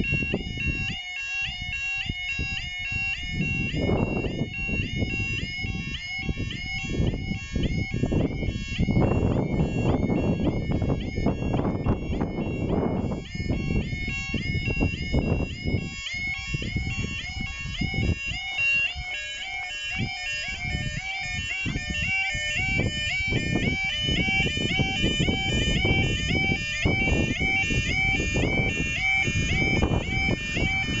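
Level crossing warning alarm sounding continuously: a loud electronic yodel, the same warbling figure repeating quickly and evenly while the road lights flash and the barriers lower.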